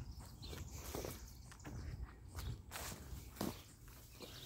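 Faint, uneven footsteps through long grass, with the blades swishing against the legs.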